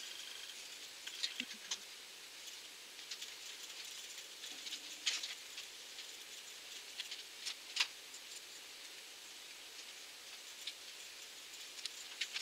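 Faint crinkling and clicking of plastic packaging as small items from a parcel are handled and unwrapped, in scattered bursts with the sharpest crackles about five and eight seconds in.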